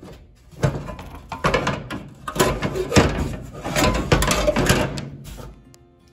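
Metal cowl vent lid of a 1950 Dodge Power Wagon being worked shut, an irregular run of metal clanks and scrapes for several seconds; the lid's edge has been notched so that it now closes all the way.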